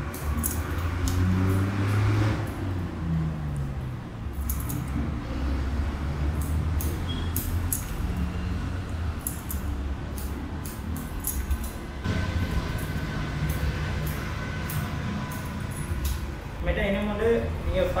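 Scattered light clicks and snips from a barber's comb, brush and scissors working a customer's hair, over a low murmur of voices.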